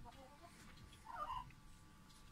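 Quiet background with a faint, brief animal call about a second in.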